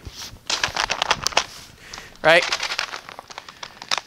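A quick run of light clicks and rustling from practice swords being handled, about half a second to a second and a half in, with a few fainter clicks later.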